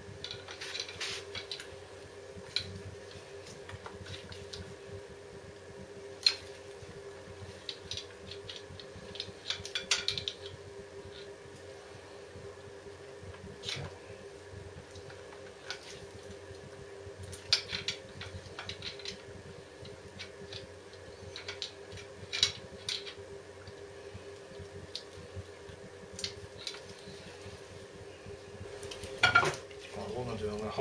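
Metal tools clinking and scraping against the Rieju 125's front brake caliper as the piston is levered back into its bore, in scattered sharp clicks with short pauses between. A steady hum runs underneath.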